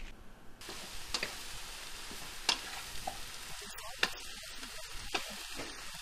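Eggplant pieces sizzling as they fry in a nonstick pan, starting suddenly about half a second in. A wooden spatula stirs them, knocking and scraping against the pan in a few sharp strokes.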